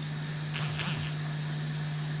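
A steady low hum, the chamber's room tone on the broadcast sound, with a brief faint sound about half a second in.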